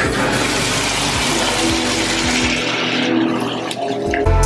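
Water running from a bathtub spout into the tub and over a hand held under the stream, a steady hiss that stops shortly before the end, with music playing faintly underneath.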